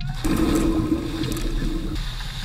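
Water splashing and rushing as several people plunge into the sea. A steady low hum runs under it, and the sound cuts off abruptly at the end.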